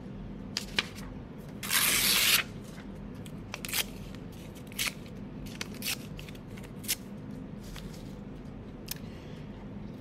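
A sheet of white paper being torn into small pieces by hand: one longer, louder rip about two seconds in, then a scattering of short tears and paper crackles.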